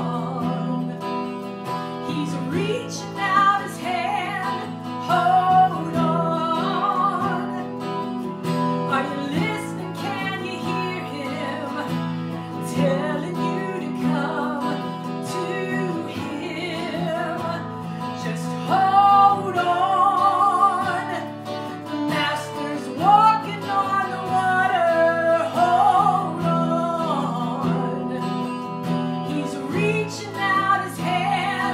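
Gospel song performed live: a woman singing with vibrato over steadily strummed chords on an amplified hollow-body electric guitar.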